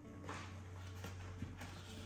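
Faint rustling and a few light knocks as wires are pulled through the foam fuselage of a model jet, over a low steady hum.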